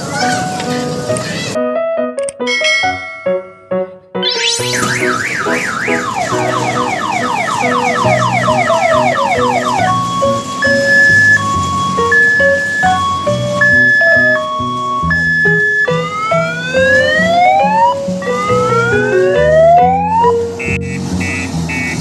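Electronic siren sound effects over music. A fast, repeating rising wail runs from about 4 to 10 s. It is followed by a two-tone hi-lo siren alternating between two held pitches, then a few long rising whoops near the end.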